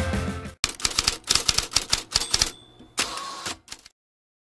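Typewriter sound effect: an irregular run of key clacks, starting about half a second in as the music cuts out and stopping just before the end.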